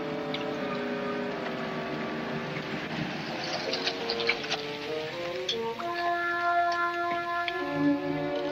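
Orchestral film-score music with sustained string notes that shift in pitch every second or so.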